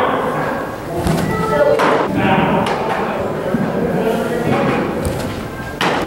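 A pitched baseball smacking into a catcher's mitt about a second in, with further sharp knocks at about two seconds and just before the end, over indistinct voices.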